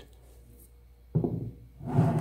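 A pause of quiet room tone, then a little past a second in, a man's short, low hesitation sounds as he gathers his next words.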